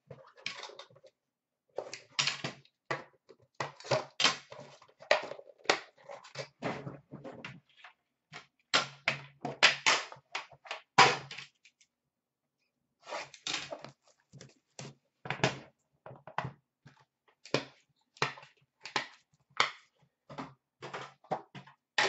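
Hands opening a metal trading-card tin and handling the card pack inside: a dense run of clicks, knocks and rustles, with a pause of about a second midway.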